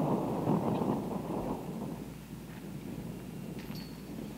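Wind noise rumbling on the microphone that dies away about halfway through, with a few faint clicks near the end.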